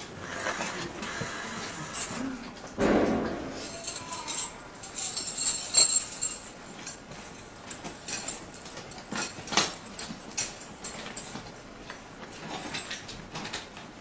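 Restraint straps and buckles being handled at the ankle of a restraint bed: scattered small clicks and rustling, with a brief louder burst about three seconds in and a few sharper clicks later.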